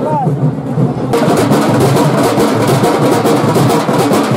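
Fast drumming with voices of a crowd. About a second in it becomes louder and denser, with rapid strokes.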